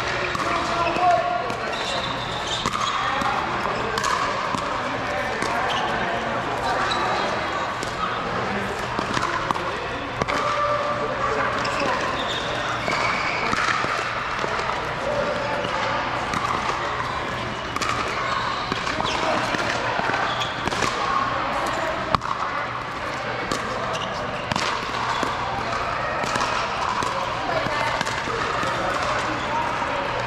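Pickleball paddles hitting a plastic ball in rallies, sharp pops at irregular intervals, over a steady background of indistinct voices.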